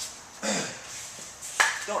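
Speech: a man's voice, a short hesitation and then the start of his next sentence; no engine running.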